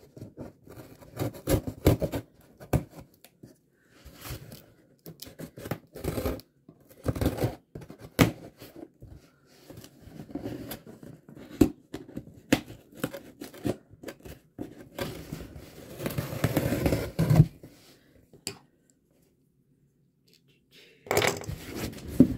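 Packing tape being picked at and torn off a cardboard shipping box, with irregular scratching, tearing and cardboard scraping. A longer, louder rasp of tearing comes about three-quarters of the way through, then a short pause before the handling starts again near the end.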